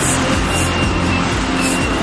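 Freight train of tank cars rolling past at close range: steady loud rumble and clatter of steel wheels on the rails, with a faint thin high squeal from the wheels.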